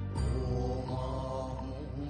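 Background music of a slow chanted Buddhist mantra, with long held tones.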